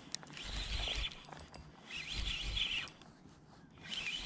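Spinning reel being cranked while bringing in a hooked schoolie striped bass: bursts of scratchy noise under a second long, about a second and a half apart.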